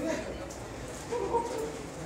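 A person's voice in two short, high cries: a brief one at the start and a longer one about a second in.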